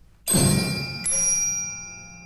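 Two loud struck, bell-like sounds about three-quarters of a second apart from an instrumentalist in a chamber ensemble, their high metallic tones ringing on and slowly fading.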